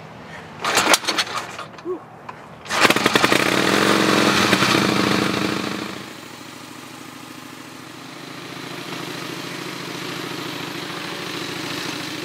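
Engine of an early first-generation Harley-Davidson, a direct-drive bike with a crank and no transmission, started by pedalling. A few knocks come first; the engine catches about three seconds in, runs fast and loud for about three seconds, and then settles to a steadier, quieter idle.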